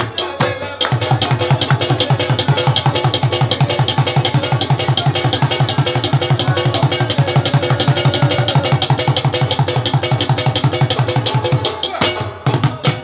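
Instrumental Pashto folk music: fast hand-drumming on mangay (clay pot) and frame drum over plucked rabab notes. The drumming settles into a quick, steady beat about a second in.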